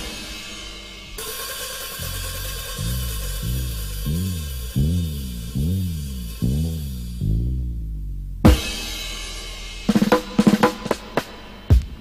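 Reggae record playing: a sustained cymbal wash over a low sliding tone that swoops up and down in repeated arches, roughly every three-quarters of a second. Sharp drum hits come in about eight seconds in, and a busier run of drum hits follows near the end.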